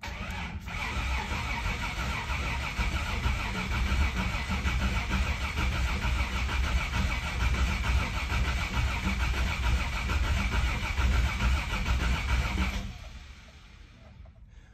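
1988 Toyota Land Cruiser FJ62's 3F-E inline-six being cranked by its starter in a steady, even rhythm without firing, stopping abruptly near the end. It cranks but does not catch; the owner bets the battery is just low.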